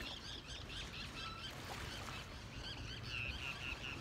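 Birds chattering steadily, a continuous run of short high chirps repeating several times a second.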